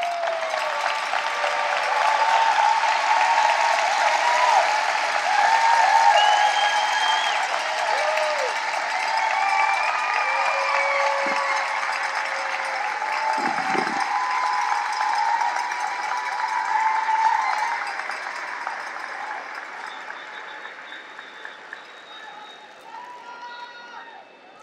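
Large audience applauding and cheering, with whoops and shouts over the clapping. The ovation is loud for most of its length, then dies down gradually over the last several seconds.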